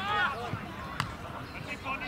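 Shouted voices across an Australian rules football field, with one sharp thud of the football being struck about a second in.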